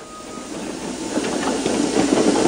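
Steam engine sound effect: steady hissing of steam with the running noise of the engines, growing louder as they pull in.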